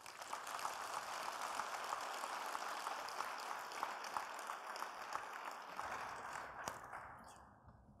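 Audience applauding, fading away near the end.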